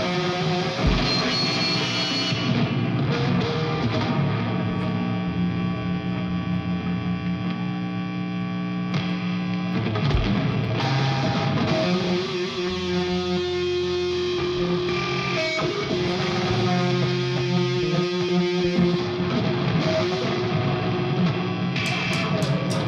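Live rock band: electric guitars through effects and an electric bass playing long, distorted held chords that change every few seconds.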